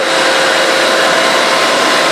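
Reverse osmosis desalination plant's machinery running: a loud, steady, even rush with a few faint steady tones in it.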